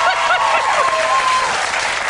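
Studio audience applauding, with voices over the clapping.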